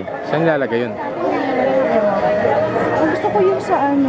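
Overlapping chatter of several people talking among shoppers and vendors, with no single voice standing out.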